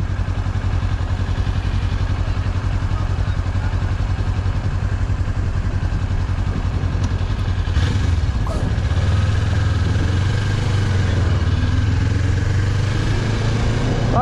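Kawasaki Ninja 400 parallel-twin engine idling, then pulling away about eight seconds in, the engine note rising a little as the bike gets under way.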